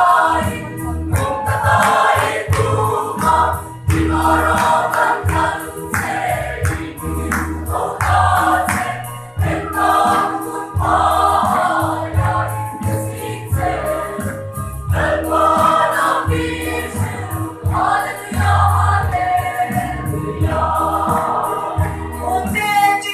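Large mixed choir of men and women singing a church song together.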